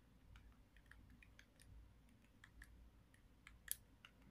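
Faint, irregular clicks of a handheld TV remote's buttons being pressed, one a little louder near the end, over near-silent room tone.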